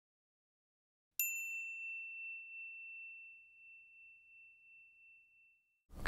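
A single bright ding sounds about a second in and rings out, fading away over about four seconds: the bell marking the end of the on-screen countdown.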